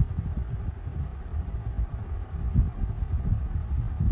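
Wax crayon rubbing back and forth on paper over a hard tabletop, a low, uneven scrubbing of quick strokes.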